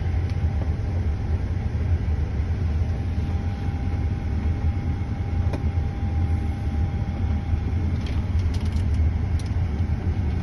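Steady low rumble inside a parked jet airliner's cockpit, with a faint steady tone that stops about seven seconds in and a few faint ticks.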